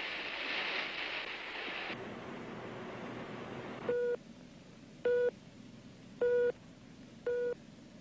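A rushing hiss that dies away about two seconds in, then a ship's radar set beeping four times: short, clean mid-pitched beeps a little over a second apart, each marking a contact on the scope.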